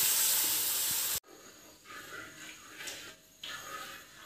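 Sizzling hiss as hot brown syrup is poured into a hot pan and stirred with a wooden spatula. It cuts off suddenly about a second in, leaving faint scraping and stirring.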